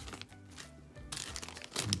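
A small clear plastic zip bag of tiny plastic figures crinkling as it is handled, loudest in the second half, over faint background music.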